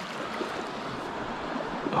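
Shallow creek water running and rippling over stones, a steady rush.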